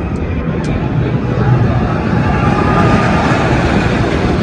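Steady, loud rush of wind buffeting the phone's microphone high up in an open-mesh Ferris wheel gondola, heaviest in the low rumble, with a faint thin whistle rising and falling around the middle.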